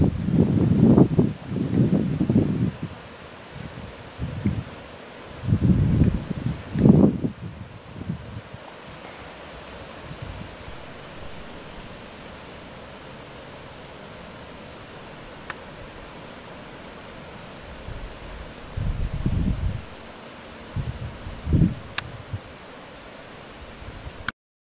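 Wind gusting on the microphone in several low bursts: at the start, about six seconds in, and again about twenty seconds in. Between them a steady outdoor hiss, with insects chirping in a fast, even pulse high up, strongest in the second half.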